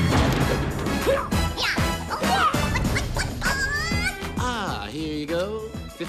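Film soundtrack music with a crash right at the start, as the cut-out panel of metal wall gives way, followed by a run of sliding, bending tones that swoop up and down.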